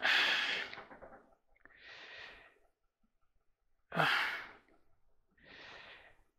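A man breathing heavily. A loud sigh out at the start, a softer breath in about two seconds in, another loud sigh out about four seconds in, and a soft breath in near the end.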